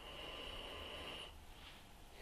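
One long sniff through the nose, drawn with the nose held in a glass of milk stout to take in its aroma, lasting about a second and a half.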